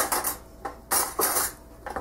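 Stainless steel forks clinking and rattling as they are picked up, with about five sharp metal clinks over two seconds.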